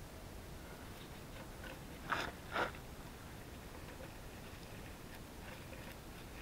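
Mostly quiet, with two brief, faint scraping rustles a little past two seconds in: gloved hands working a hydraulic hose fitting onto the backhoe control valve.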